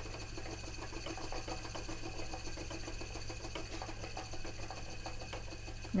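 Wooden spinning wheel being treadled, its wheel and flyer turning with a steady run of light clicks, while two-ply yarn is plied with extra twist for a cable yarn.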